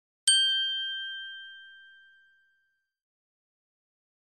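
A single bell-like chime, struck once and ringing out, fading away over about two seconds.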